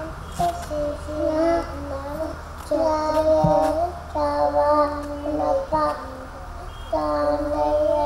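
A young girl chanting a Sanskrit sloka into a microphone, in a sing-song voice of held phrases with short pauses between them.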